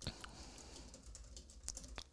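Typing on a computer keyboard: a quick run of faint keystrokes, with sharper clicks at the start and near the end.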